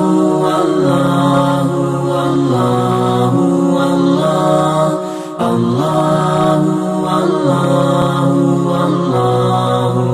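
A cappella vocal chant: voices holding long, steady notes that move from pitch to pitch, in two phrases, the second starting about halfway through.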